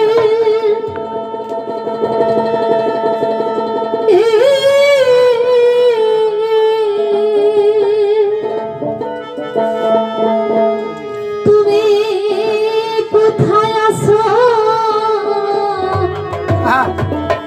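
A woman singing a Bengali folk song into a microphone, holding long wavering notes over live accompaniment that includes a plucked string instrument.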